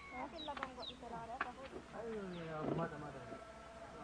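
Unintelligible voices mixed with short, high animal calls; in the middle, one longer vocal sound slides down in pitch.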